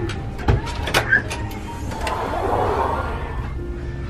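A cabin door being unlocked and pushed open: a few sharp clicks and a knock from the latch and handle in the first second, with background music underneath.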